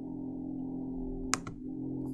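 Steady hum of a computer fan picked up by the computer's internal microphone, with a single mouse click a little over a second in.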